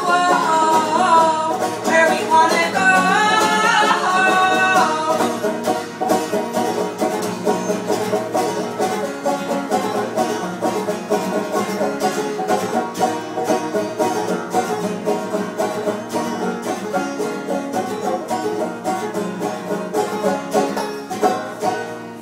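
Live banjo and acoustic guitar playing a folk punk song, with a sung vocal line over them for the first few seconds. After that the two instruments carry on alone, the banjo picked in quick, even notes over the strummed guitar.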